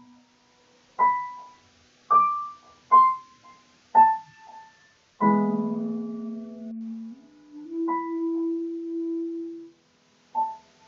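Piano playing slowly: four single notes about a second apart, then a chord with a low note held under it that steps up and holds, fading out just before the end.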